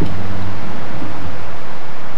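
A parked SUV's engine idling with a low steady hum that cuts off about half a second in, as if switched off, leaving a steady hiss.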